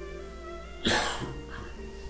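A man coughs once into his fist, a short burst about a second in, over soft background music.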